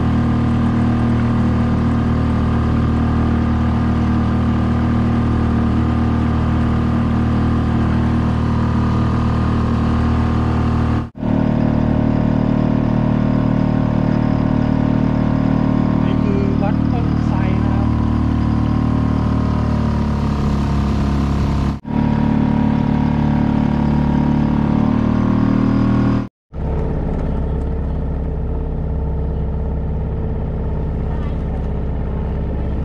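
Suzuki 2.5 hp single-cylinder four-stroke outboard motor running steadily under way, pushing a small boat along. It is broken by three brief dropouts. The engine note shifts around twenty seconds in and runs a little quieter after the last break.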